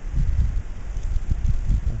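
Wind buffeting the microphone in uneven low rumbling gusts.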